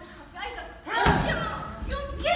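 One heavy thump on the stage floor about a second in, with actors' voices around it in a large hall.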